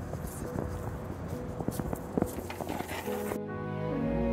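Background ambience with scattered clicks and knocks. About three and a half seconds in, instrumental background music starts suddenly.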